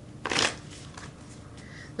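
Tarot cards being handled: one brief papery swish of a card sliding or being drawn, about a quarter of a second in.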